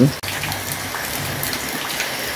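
Steady rain falling, an even hiss of drops.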